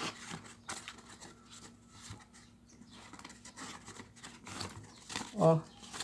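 Faint, scattered handling noises: EVA foam leaves on wire stems being set into a pot and adjusted by hand, with light clicks and rustles.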